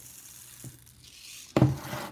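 Sugar beads pouring out of a plastic tub onto slime, a light, steady hiss of small beads pattering down. About a second and a half in it is cut off by a sudden loud thump.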